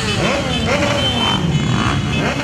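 Several motorcycles riding past, their engines running steadily, with people's voices over them.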